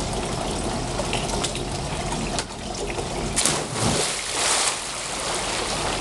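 A person diving into a swimming pool off a springboard: a sharp slap on the water about three and a half seconds in, then about a second of splashing. A steady trickle of running water sounds underneath.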